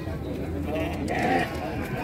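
Domestic sheep bleating a couple of times, fairly faint, over background voices in a crowded pen.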